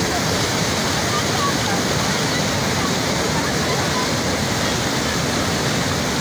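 Floodwater rushing over a submerged river crossing, a steady, even noise of flowing water, with faint voices in the background.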